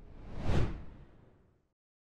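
Whoosh sound effect for an animated intro logo, swelling to a peak about half a second in and fading out within the next second.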